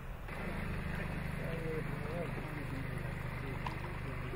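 A steady low hum, with faint distant voices rising and falling over it in the middle.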